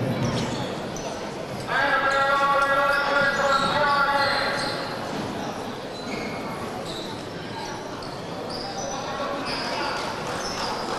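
Basketball game sounds in a reverberant sports hall: the ball bouncing and short high sneaker squeaks on the court. A single voice holds one long call for about three seconds, starting about two seconds in.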